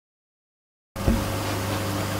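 Dead silence for about the first second, then steady room noise with a faint low hum sets in.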